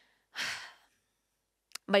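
A person's single breathy sigh, about half a second long, shortly after the start, followed by a pause and a short intake of breath just before speech resumes.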